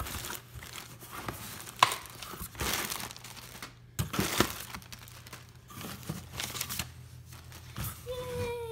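Clear plastic packaging crinkling and rustling as hands dig through the products in a cardboard shipping box, with a few sharp crackles.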